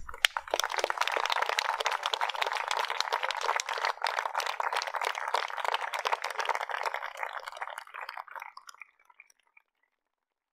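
Small audience applauding: dense clapping that begins abruptly and fades out about eight or nine seconds in.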